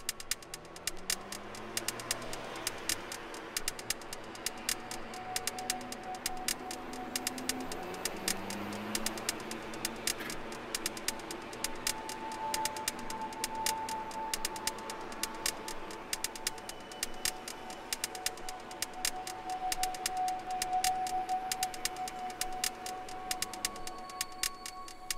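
Techno played from vinyl records through a DJ mixer: fast ticking percussion over held synth tones, with low rising glides in the first several seconds.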